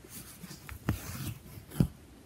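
Embroidery needle and thread pulled through fabric stretched taut in a hoop while working chain stitch: a scratchy rubbing of thread drawn through the cloth, with two sharp taps a little under a second apart, the second near the end and the louder.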